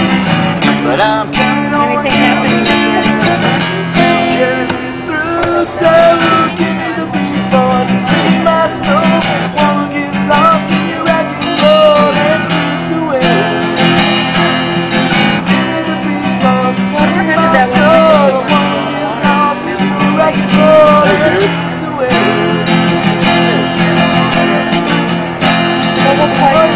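Acoustic guitar lying flat on the ground, played with the feet and amplified through a small amplifier, sounding held chords that change every few seconds, with a voice singing a wavering melody over it.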